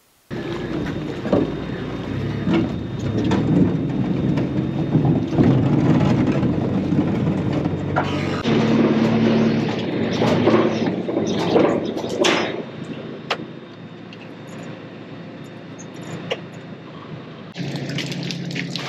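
A farm vehicle's engine running, heard from inside its cab, with knocks and rattles over it. The engine note changes abruptly about halfway through and is quieter near the end.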